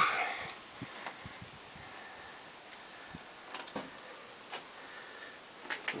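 Faint background hiss with a few light, scattered knocks, the handling and movement noise of someone shifting position and carrying the camera.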